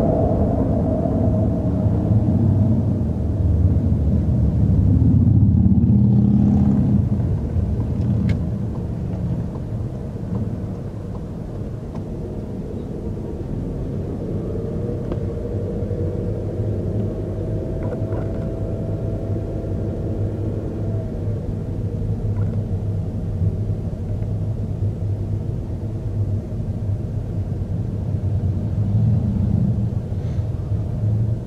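Car driving, heard from inside the cabin: a steady low rumble of engine and tyre noise, louder over the first several seconds, with a faint thin whine rising slightly in the middle.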